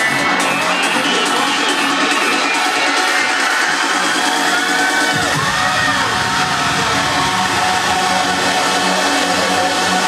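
Trance dance music played loud through a club sound system from a DJ set, with a crowd cheering over it. The deep bass is missing at first and comes back in about halfway through.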